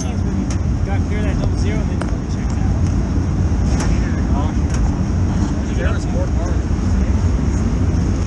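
A steady low rumble of engines running around the dirt-track pits, with voices talking in the background. A few sharp knocks come from the in-car camera being handled and taken down.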